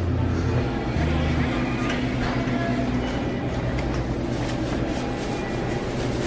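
Convenience-store room tone: a steady low hum and a wash of background noise, the hum heavier for the first second or so, with faint rustle from a hand-held camera carried while walking.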